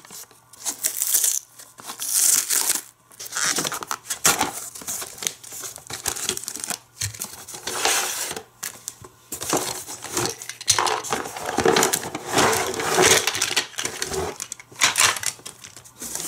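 Cardboard toy box being cut and torn open and its cardboard packaging handled, in irregular bursts of tearing and rustling.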